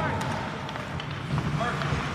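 Ice hockey rink ambience: indistinct voices of spectators and players calling out over a low arena rumble, with a few sharp clacks from hockey sticks and the puck on the ice.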